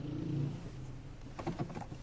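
Car engine running, heard from inside the cabin: a low steady hum that swells briefly in the first second. A few faint knocks follow near the end.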